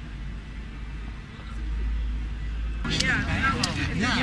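Steady low outdoor rumble that grows louder about a second and a half in. Just before the end a man starts talking over it.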